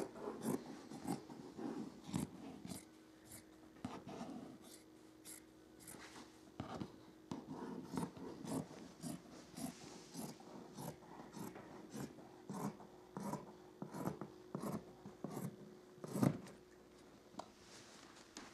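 Scissors snipping through a double layer of cotton batting: a long run of short crisp cuts, a little under two a second.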